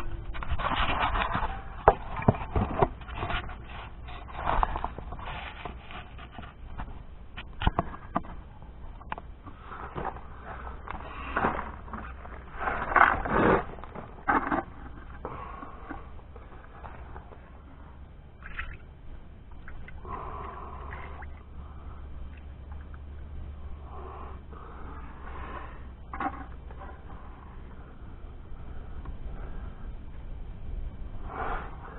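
Scraping, rubbing and scattered knocks of handling: a metal air cleaner oil cup and a pail are moved about and set down on gravel. The knocks come thick in the first half and thin out after, leaving fainter scrapes.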